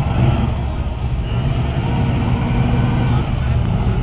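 Engine of a custom 1940s street rod running low and steady as the car rolls slowly by.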